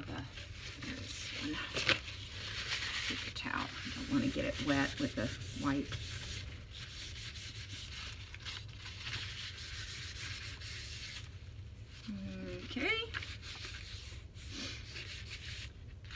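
Hands and a tissue rubbing and smoothing glued shiny paper flat on a journal cover, a dry brushing sound that comes and goes. About twelve seconds in there is a short sound that rises in pitch.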